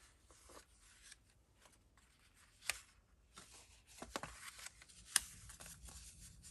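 Paper ephemera and journals being handled on a cutting mat: faint rustling and sliding of cards and pages, with two sharp ticks, the louder one near the end.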